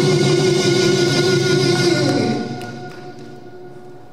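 A Korean traditional orchestra with gayageums, playing with a band, holds the final chord of a song, which dies away about two seconds in, a low note sliding down as it fades, leaving the hall's reverberation.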